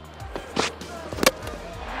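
Background music with a single sharp crack about a second and a quarter in: a cricket ball's impact as it is delivered and met at the crease.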